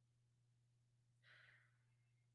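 Near silence: faint room tone with a steady low hum, and a faint intake of breath a little past halfway, just before speech begins.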